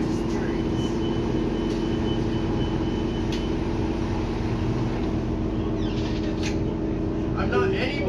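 Steady engine and road hum heard from inside a city bus cabin, with a faint high whine over the first few seconds. A voice comes in briefly near the end.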